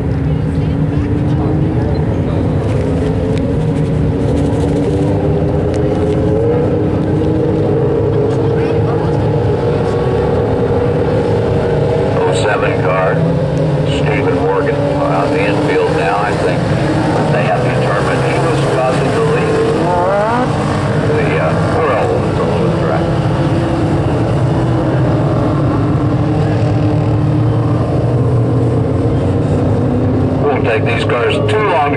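Several motorcycle-engined dwarf race cars running laps together on a dirt oval. Their engines drone in overlapping pitches that rise and fall as the cars go round, with a pass close by about halfway through.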